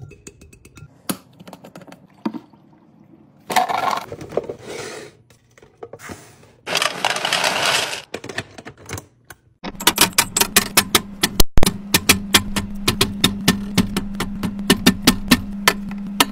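Sharp clicks and taps of small objects being handled, with two bursts of a rushing noise in the middle, then from about ten seconds in a fast, even run of clicks, roughly four a second, over a low steady hum.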